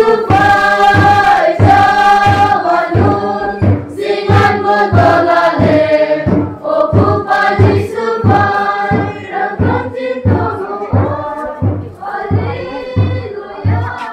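A group of women singing a hymn together, with a steady low beat about two times a second under the voices.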